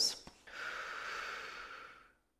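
A person's long breath, heard close on a clip-on microphone. It comes after a small click and begins about half a second in, then cuts off suddenly at the end.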